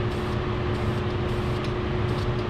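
A machine runs with a steady drone and a constant low hum. Over it come faint short hisses of an aerosol spray can being sprayed on and off onto the trailer fender.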